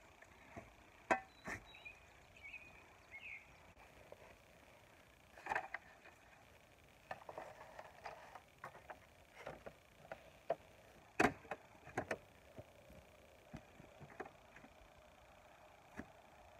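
Scattered scrapes and wooden knocks of hand work: a shovel scraping into soil, then hinged wooden pallet collars clunking as they are unfolded and set on the ground. The two loudest knocks come about three-quarters of the way through.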